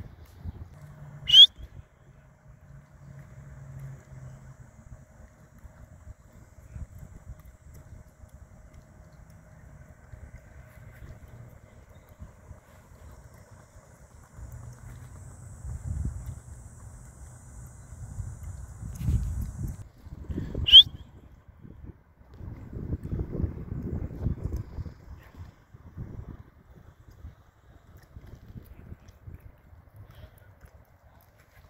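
Wind rumbling on the microphone, with two short, loud, high-pitched chirps: one just after the start and one about twenty seconds in.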